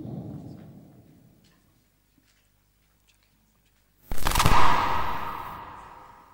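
Two knocks on a handheld microphone, carried through the PA: a sharp one at the start and a much louder one about four seconds in, each dying away over a second or two in the hall's echo.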